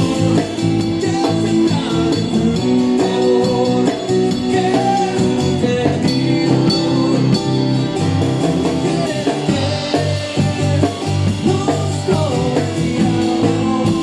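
Live acoustic guitar strummed with a pick, with a man singing a rock en español song.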